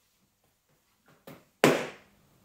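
A cotton hand towel snapped out in the air, giving one sharp crack near the end after a softer swish a moment before.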